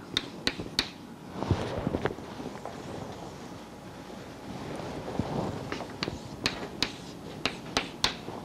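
Chalk tapping and scraping on a blackboard as a formula is written. There are a few sharp taps in the first second, then a quicker run of taps in the last two seconds.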